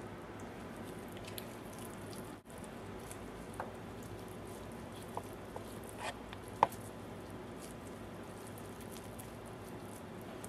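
Faint wet squishing and small clicks of braised duck-leg meat being pulled apart from the bone by gloved hands, over a low steady room hum. The clicks are scattered, the sharpest about two-thirds of the way through.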